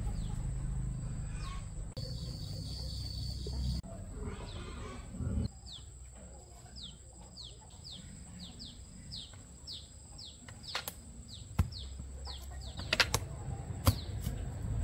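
A bird calls in a series of short, high, downward-sliding whistled notes, a couple a second. Toward the end come several sharp knocks as a long bamboo pole strikes at papayas on the tree to bring the fruit down.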